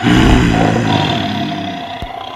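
A lion's roar sound effect: one long roar that starts abruptly and fades away over about two and a half seconds.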